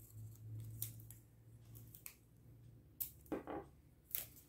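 Faint handling of paper washi tape: a few short, crisp rips and crinkles as strips are pulled and torn, over a low steady hum that fades out near the end.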